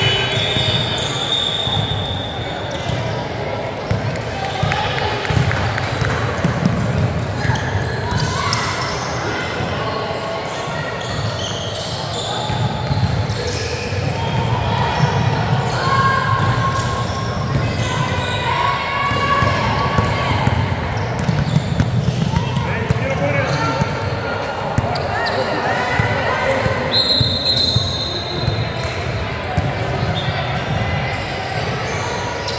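Basketball being dribbled and bouncing on a hardwood court during a game, with players' and spectators' voices, all echoing in a large gym.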